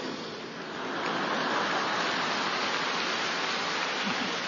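Audience applause in a large hall, an even clatter of many hands that builds about a second in and then holds steady.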